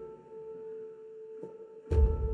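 A single held tone from a horror film score, steady and quiet, with a faint higher overtone. A soft click comes about one and a half seconds in, and a deep low hit starts just at the end.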